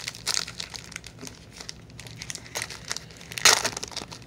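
Crinkling and tearing of a 1992 Pro Set football trading-card pack's wrapper as it is ripped open by hand. The crackles are irregular, with the loudest burst about three and a half seconds in.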